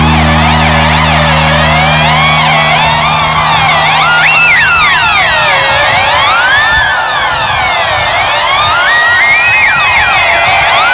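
Live rock band's instrumental break. An electric guitar's pitch swoops slowly up and down in siren-like glides, over a held low bass note that drops out about two and a half seconds in.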